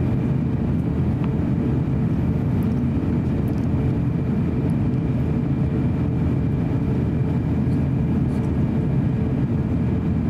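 Steady in-flight cabin noise inside an Airbus A350-900 airliner: the even, deep roar of its Rolls-Royce Trent XWB turbofan engines and airflow, with a faint steady whine above it.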